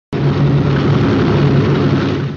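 Propeller airliner's piston engines running, a loud steady drone with a strong low hum.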